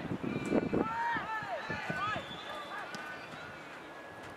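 Several voices shouting and calling across an open football ground, rising and falling in pitch without clear words.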